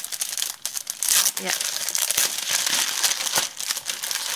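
Clear plastic wrapping on a scrapbook paper pad crinkling and crackling as it is handled and opened, with sharp crackles throughout.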